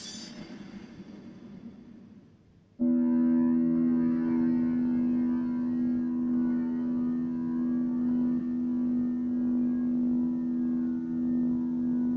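The last of a TV promo's soundtrack fades out. About three seconds in, a single sustained musical chord from the channel's continuity music starts abruptly and holds steady, heard through a television's speaker.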